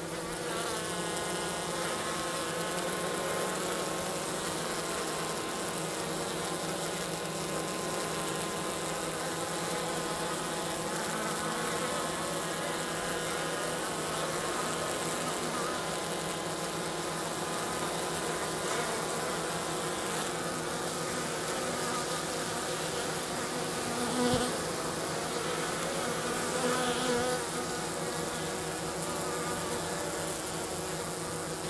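Honey bees buzzing at the hive entrance, a steady wavering hum, with two brief louder buzzes in the last third.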